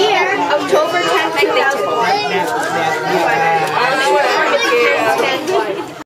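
Several people talking over one another in lively chatter, children's voices among them.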